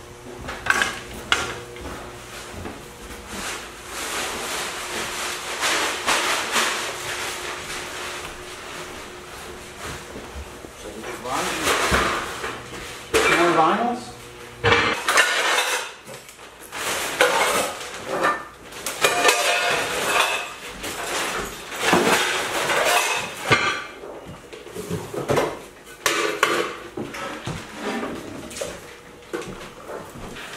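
Dishes and metal cookware clattering and clinking as they are handled and tossed into a trash bag, in an irregular run of knocks and clanks, some ringing briefly.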